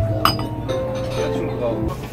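Background music with a single sharp glass clink about a quarter of a second in.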